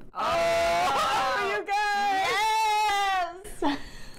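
Women's voices making long, drawn-out appreciative "ooh"/"mmm" sounds of delight at the smell of a chocolatey imperial stout: one held tone, a short break about one and a half seconds in, then a second, longer one that gently rises and falls.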